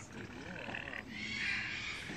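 Crowned cranes calling, with low wavering calls.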